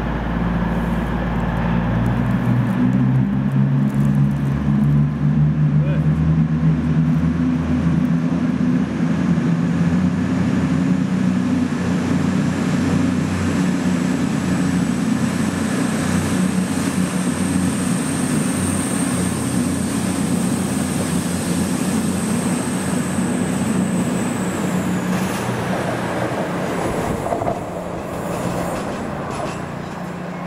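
Class 220 Voyager diesel-electric unit pulling out of the platform and passing close by, its underfloor diesel engines running under power. A high whine over the engine note holds, then drops in pitch about three-quarters of the way through as the train goes by, and the sound fades toward the end.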